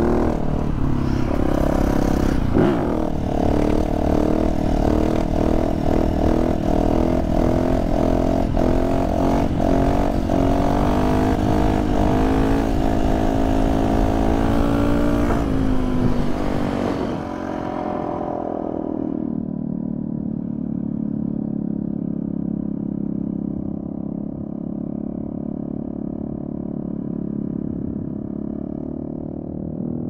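Yamaha enduro motorcycle engine running and revving up and down while riding a rough track, with rattling and clattering from the bike over the bumps. A little over halfway through the sound turns muffled and steadier.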